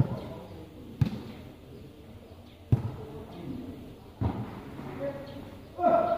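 A volleyball being struck with feet and heads in a rally: four sharp thumps, one to one and a half seconds apart, with voices calling out near the end.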